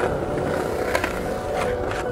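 Skateboard wheels rolling on concrete and brick paving, with sharp clacks of the board: one about a second in and two more close together near the end. Background music plays under it.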